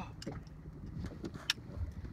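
Low wind rumble on the microphone on an open boat, with a single sharp click about one and a half seconds in.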